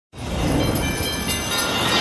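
The soundtrack of an animated title intro, starting abruptly: a dense, steady rushing sound with many high ringing tones over a low rumble.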